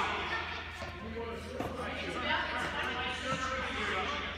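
Voices talking and calling across a large indoor tennis hall, with a couple of short knocks from tennis balls being hit or bouncing, over a steady low hum.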